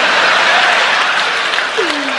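Live theatre audience applauding a stand-up comedian's punchline: a steady, even wash of clapping.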